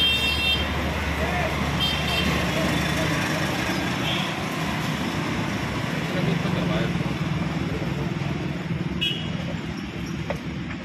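Busy street traffic noise with voices in the background, and short high horn toots near the start, about two seconds in, and again about nine seconds in.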